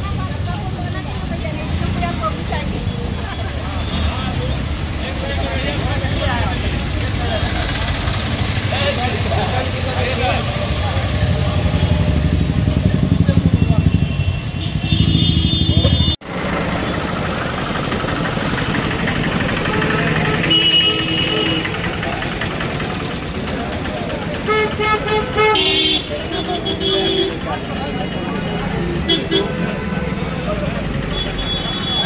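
Busy street noise: people's voices, motorcycle and traffic engines, and several short vehicle horn honks, mostly in the second half. The sound drops out for an instant about sixteen seconds in, where the footage cuts.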